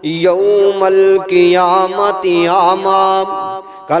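A man's voice chanting a Quranic verse in melodic recitation into a microphone, the pitch held and wavering in ornamented runs, with a short break near the end.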